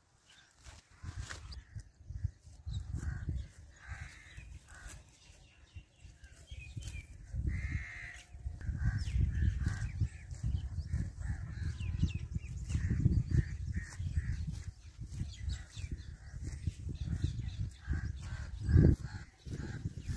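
Birds calling with repeated short chirps over an uneven low rumble of wind on the microphone that swells and fades, peaking sharply near the end.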